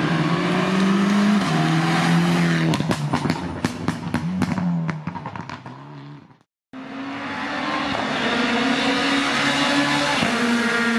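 Rally car engine at full throttle, its pitch climbing and dropping with each gear change as it comes past. About three to five seconds in comes a rapid series of sharp cracks from the exhaust as the car lifts off and moves away. The sound cuts out abruptly and a second rally car engine follows at high revs.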